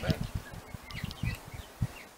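Outdoor background with a few faint bird chirps over scattered low bumps.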